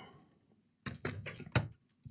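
A few short knocks and clatters of laptop parts being handled on the workbench, bunched together about a second in.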